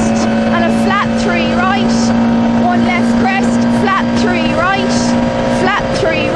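Vauxhall Nova rally car's engine heard from inside the cabin, running hard at steady revs along a straight, with a dip in pitch near the end.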